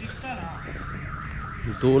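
A warbling electronic alarm tone, its pitch rising and falling several times a second, like a car alarm siren.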